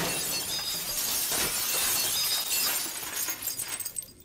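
A glass panel shattering under a falling man, with a dense shower of shards tinkling and scattering down that thins out near the end.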